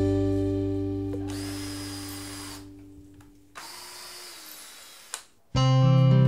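A cordless drill runs in two short bursts, each a little over a second, into a wooden frame, the second ending with a click. A guitar chord from the background music fades out beneath it, and the guitar music comes back loud near the end.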